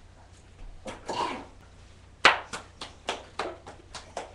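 A short rasping noise about a second in, then one loud knock followed by a quick run of sharp footfalls, about four a second, as a child runs across a hard floor.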